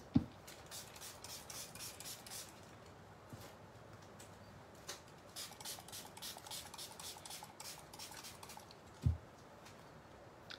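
A small fine-mist spray bottle spritzing water onto powdered pigment to activate it: short, sharp hissing sprays about four a second, in two runs. There is a soft knock just after the start and a thump about nine seconds in.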